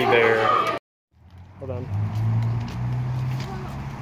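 Voices cut off abruptly less than a second in, then after a short gap a steady low mechanical hum fades up outdoors, with a brief voice over it.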